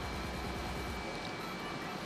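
Kitchen extractor hood fan running: a steady mechanical hum with a faint high whine.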